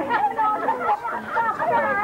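Several voices talking over one another in lively, overlapping street chatter, with no single speaker standing out.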